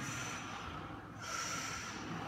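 A powerlifter breathing heavily between heavy deadlift reps with the bar on the floor: two breaths, the second starting a little after a second in.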